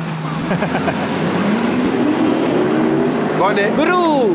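A motor vehicle's engine running over road noise, its pitch rising through the second half.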